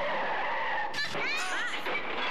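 Scooter tyres skidding: a screech starts suddenly with a steady held tone, then breaks into a wavering high squeal about a second in, as two scooters collide.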